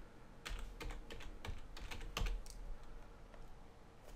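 Computer keyboard typing: a dozen or so short, irregularly spaced key clicks as a name is typed into a text field.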